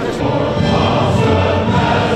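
A choir singing with musical accompaniment: many voices holding sustained notes, starting right at the beginning and growing fuller about half a second in.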